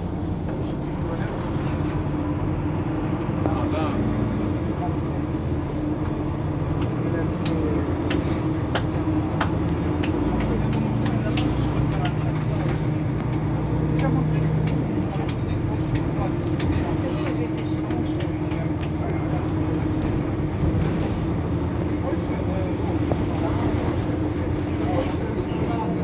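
Mercedes-Benz Citaro C2 hybrid Euro 6 city bus standing at a stop with its diesel engine idling, a steady hum. A deeper hum swells for a few seconds midway. People talk nearby.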